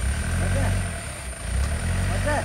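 Diesel engine of a rock-laden tipper truck working under load as it reverses over gravel, the low engine sound swelling and easing twice.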